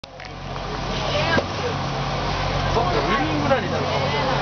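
Indistinct chatter of several voices over a steady low hum.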